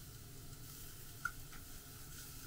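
Sliced onions and bell peppers sizzling faintly in a frying pan as chopsticks stir them, with a light tap of the chopsticks against the pan about a second in.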